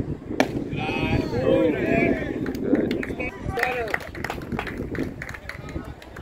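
A sharp pop about half a second in as the pitch is caught in the catcher's mitt. It is followed by voices shouting and chattering from players and spectators, with scattered small knocks and claps.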